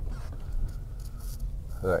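Low, steady rumble of the Mercedes R129 500SL's V8 and road noise, heard inside the cabin while driving.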